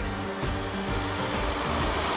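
Background music over a van driving past, with its rushing road noise swelling as it comes close near the end.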